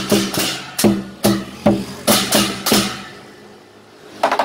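Lion-dance percussion: pairs of hand cymbals clashed in a quick rhythm, about two to three crashes a second, each strike with a deep drum-like thud under it. The last crash, a little under three seconds in, rings out and fades away.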